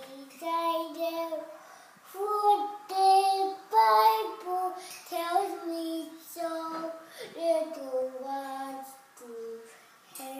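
A toddler singing, holding notes in short phrases that step up and down in pitch, with brief pauses between them; loudest about a third of the way in.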